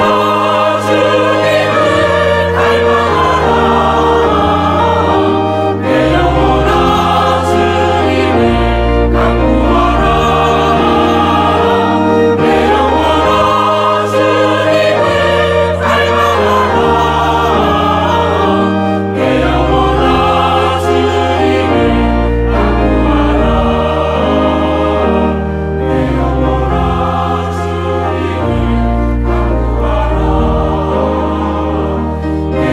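A mixed choir of men and women singing a hymn in Korean, with instrumental accompaniment holding long low bass notes under the voices.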